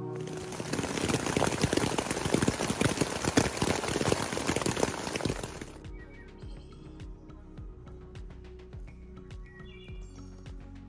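Waterfall rushing, a dense steady roar that cuts off abruptly about five and a half seconds in. After it, water drops tap scattered on wet tent fabric, with a few birds chirping.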